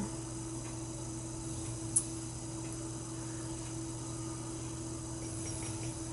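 Quiet room tone with a steady low electrical hum, and a single small click about two seconds in.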